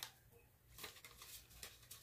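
Faint rustling and a few soft ticks of paper money and a binder envelope being handled.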